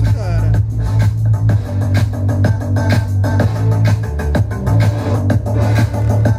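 Music playing loud through a Philips NX7 party tower speaker: heavy, steady bass under a regular beat.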